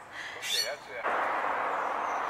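A brief high falling chirp from a bird, then a steady hiss of outdoor background noise that starts abruptly about a second in.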